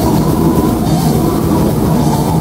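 Death metal band playing live at full volume: distorted electric guitars over fast, dense drumming, a thick unbroken wall of sound.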